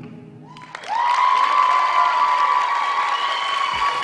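An audience applauding and cheering as a dance routine's music ends. The clapping swells in about a second in, with a long held shout carried over it.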